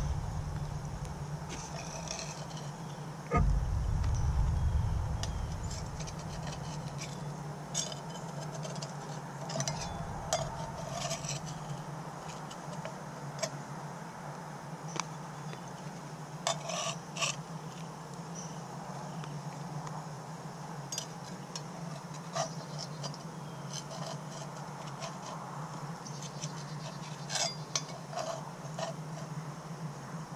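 Metal spatula scraping and clicking against a cast iron Dutch oven as cookies are lifted out, heard as scattered light clicks and scrapes. A low rumble comes about three seconds in, and a steady low hum runs underneath.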